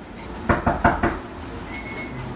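Door latch and lock clicking and knocking as the door is worked open: four short sharp knocks within about half a second.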